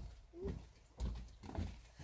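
Footsteps of two people in sandals on wooden boardwalk planks, dull knocking thuds about twice a second, picked up through the boards by a camera resting on the deck.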